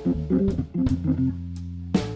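Live blues band playing: an electric guitar plays a quick run of notes over bass guitar and drums, then settles into a held chord for the last part. A loud drum and cymbal hit lands at the very end.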